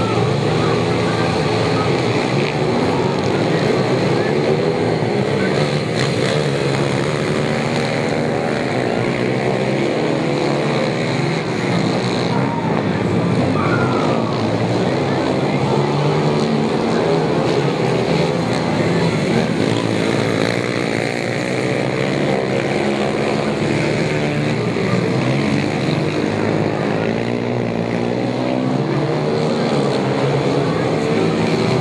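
Several small speedway motorcycles racing on a dirt oval. Their engines overlap and rise and fall in pitch as they rev through the bends.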